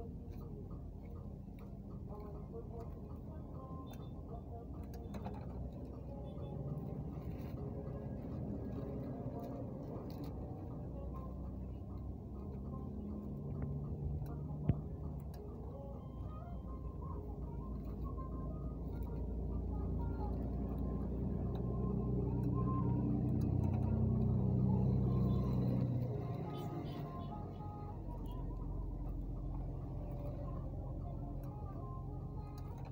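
A steady low rumble with indistinct voices or music underneath, growing louder in the second half and easing off near the end. Over it, plastic bags crinkle as they are handled at a hand-pressed impulse bag sealer, with one sharp click about halfway through.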